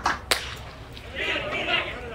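A single sharp crack about a third of a second in: a baseball impact at the plate.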